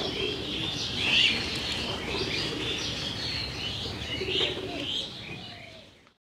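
Birds chirping, many short high calls overlapping, with a few lower cooing calls like a dove's. The sound fades out near the end.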